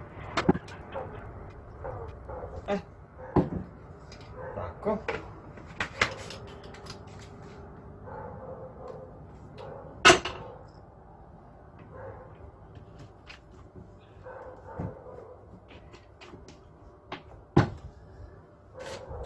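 Scattered clicks and knocks from a paint spray gun, its cup and plastic bottles being handled while the gun is cleaned. The loudest is a sharp knock about ten seconds in.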